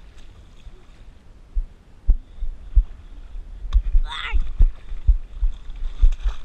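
Water sloshing and knocking against a waterproof action camera at the water's surface, giving irregular low thumps that grow busier from about a second and a half in. A brief voice-like call cuts in about four seconds in.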